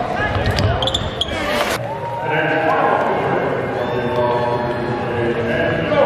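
Live basketball game sound on a hardwood court: sneakers squeaking and a ball bouncing, with a couple of sharp knocks in the first two seconds, and voices in the arena.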